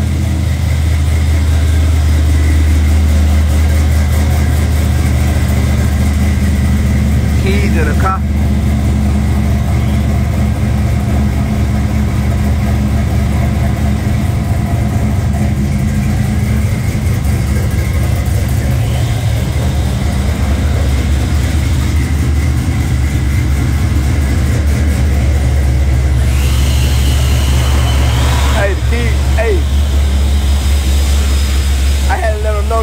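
Car engine idling steadily throughout.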